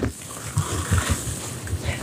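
Skis sliding over packed snow: a steady, even hiss.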